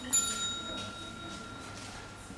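A single bell-like chime struck once just after the start, its tone ringing on and fading slowly.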